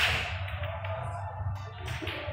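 Pool balls clicking together as they are set in a triangle rack. A sharp click comes right at the start, and fainter clicks come near the end, over a steady low hum.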